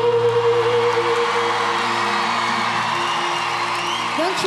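A symphonic metal band's final held chord dies away as a large arena crowd cheers, with a few rising whistles near the end.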